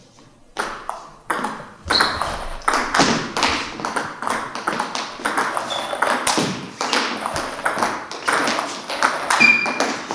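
Table tennis rally: a celluloid-style ball bouncing on the table and being struck by rubber-faced paddles, a quick run of sharp clicks and knocks starting about half a second in. The strokes are pushes and forehand loops against backspin.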